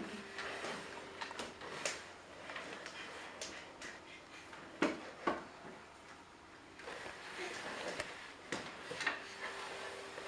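Wooden chair legs scraping and knocking on a laminate floor as a small child shoves the chair along in short pushes, with a few sharper knocks about five and eight to nine seconds in.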